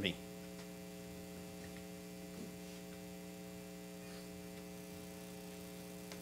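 Steady electrical mains hum: a low, even buzz made of several fixed tones that does not change.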